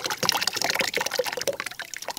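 Wet paper pulp (blended tissue mush) being poured into a dish of cold water, a quick irregular run of splashing and sloshing.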